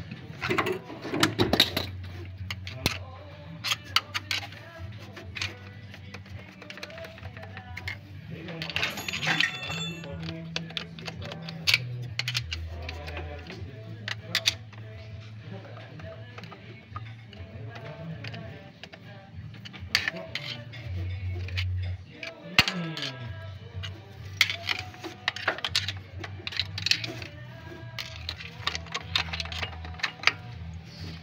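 Sharp metallic clicks and taps of a screwdriver working against the timing idler gears of an Isuzu Panther engine as it pries them loose, over background music with a steady bass line.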